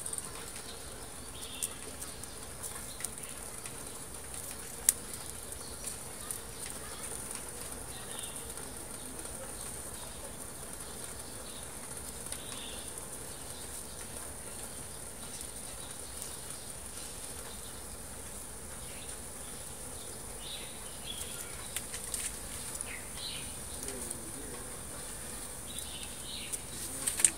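Small wood fire burning in a tin-can stove under a pot, giving a few sharp crackles over a steady high-pitched hiss.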